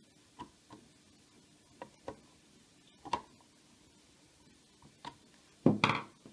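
Light, irregular clicks and taps from a small screwdriver and screws working on a plastic alarm siren case, a few at a time, then a louder clatter near the end.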